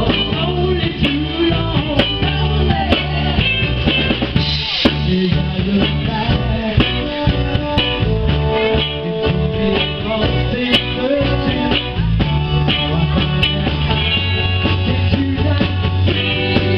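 Live band playing with a steady beat: drum kit, guitar, bass and keyboards, amplified in a small room.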